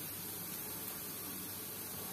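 Steady faint hiss of room tone, with no distinct sound standing out.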